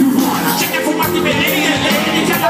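Loud live concert music: a band playing with a lead vocal over it, recorded from within the audience.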